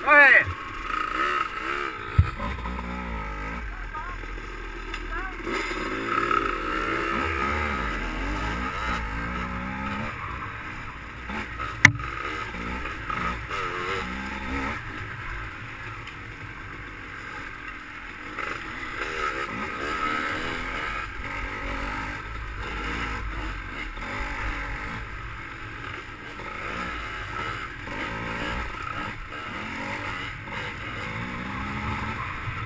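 GasGas dirt bike engine being ridden, its pitch rising and falling with the throttle, revving hard right at the start. A single sharp knock about twelve seconds in.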